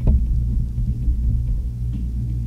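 A low steady hum with irregular low rumbling under it and a single click at the very start.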